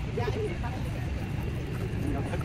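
Indistinct talk in the background over a steady low rumble.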